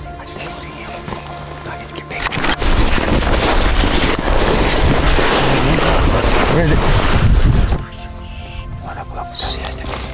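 Background music with a loud rushing noise of wind on the microphone, starting about two and a half seconds in and cutting off abruptly near eight seconds.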